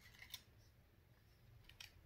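Near silence: room tone, with two faint clicks.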